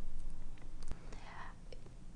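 A pause in a woman's speech, heard close on a lapel microphone: a soft breath and a few faint clicks, with one sharper click about a second in.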